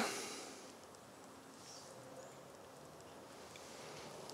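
Faint, steady background noise with no distinct sound in it.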